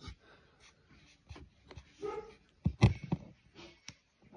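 Irregular clicks and knocks from handling a plastic Beaver Lab Darwin M2 handheld digital microscope as it is turned and refocused over sand grains. The loudest knock comes a little before three seconds in.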